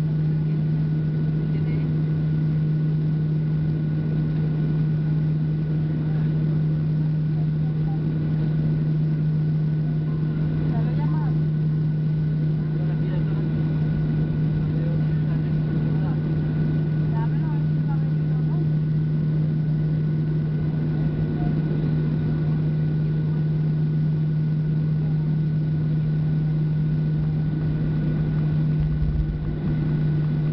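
Inside the cabin of a Boeing 737-700 taxiing, its CFM56-7 turbofan engines run at taxi idle. The drone is steady, with a constant low hum.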